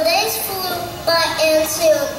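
A large choir of first-grade children singing together, holding each note of the melody for about half a second.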